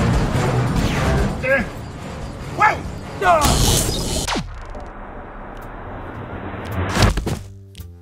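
Staged sound effects of a drone being shot down: a loud burst of crackling noise about three and a half seconds in, a falling tone, then a sharp thud about seven seconds in, with music underneath.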